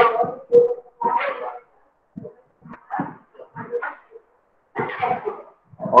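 A dog barking several times, short separate barks spread through a few seconds.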